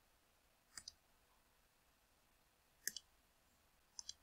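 Computer mouse clicking: three quick pairs of clicks, about a second in, about three seconds in and at the very end, with near silence between them.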